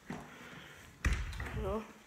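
A single dull thump about a second in, heavy in the low end, followed by a brief spoken word.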